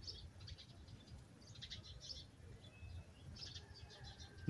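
Faint birds chirping in short, scattered runs of high chirps.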